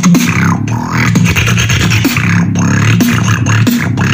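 Human beatboxing: a continuous low pitched bass line held under sharp mouth-made percussive hits, with sweeping vocal glides rising and falling above it in a dense, complex beat.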